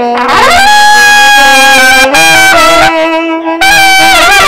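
A small brass horn and a saxophone playing together in two parts on long held notes. The first note is reached with a rising scoop, the pitches step to new notes a few times, and there are short breaks for breath about two and three and a half seconds in.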